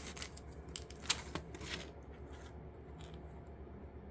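Plastic-sleeved comic books on backing boards rustling and sliding against each other as a hand flips through them in a cardboard box. The sound comes in several short crinkling brushes, most of them in the first two seconds.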